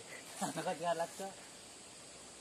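A person's voice calling out a few short syllables about half a second in, stopping before the halfway point. A faint, steady, high-pitched hum runs underneath.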